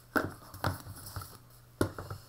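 A tarot deck being taken out of its open cardboard box and set down on a table: four short knocks and taps about half a second apart.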